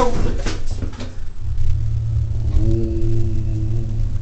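U.S. Elevator hydraulic elevator car starting its climb, a steady low rumble that strengthens about a second and a half in as the car rises.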